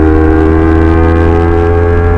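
Honda CBR250RR's parallel-twin engine running at steady revs while the bike cruises, a loud, even multi-toned drone.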